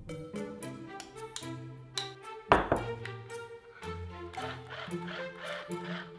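Background music made of quick, short notes, with one louder sudden sound about two and a half seconds in.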